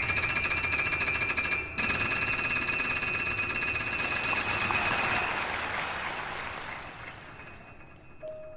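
The closing bars of a solo piano track: a high chord held as a rapid tremolo, then a swelling wash of sound that fades out towards the end.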